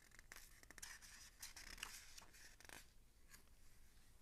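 Near silence with a scatter of faint scratches and ticks: hands handling a paper picture book.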